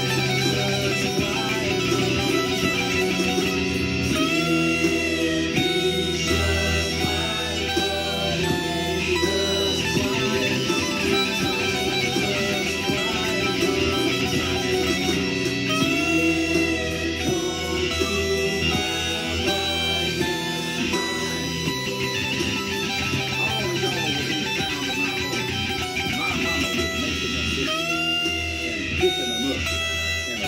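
Electric guitar played along with a recorded song that has vocals.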